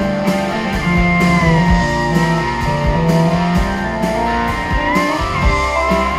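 A rock band playing live through an instrumental passage: electric guitars over bass and drums keeping a steady beat. A held lead note slides down about a second in and bends back up near the end.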